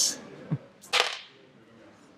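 Two six-sided dice thrown onto a hard gaming board, landing with a short, quick clatter about a second in.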